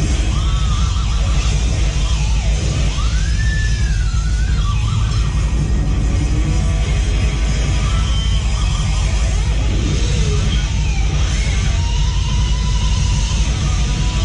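Metal band playing live at full volume, drum kit and bass guitar with no lead guitar. A couple of high gliding tones rise and fall over the din, about half a second in and again about three seconds in.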